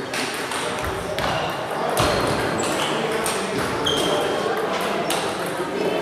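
Table tennis balls clicking against tables and paddles from several rallies at once, irregular sharp ticks throughout, with a few short high squeaks.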